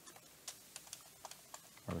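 Faint clicks of computer keyboard keys being typed, several separate keystrokes at an uneven pace.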